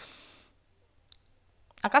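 A short pause in a woman's speech: a breath fades out, then it is near quiet with one faint click about a second in, and her voice comes back near the end.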